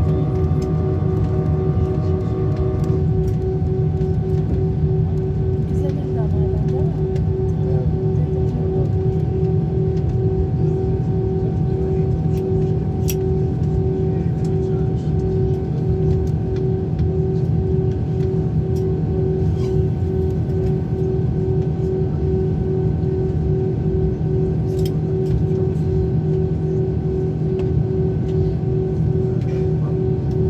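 Cabin noise of an Airbus A321 taxiing at low speed: a steady low engine rumble with several constant hum tones, one of them pulsing evenly.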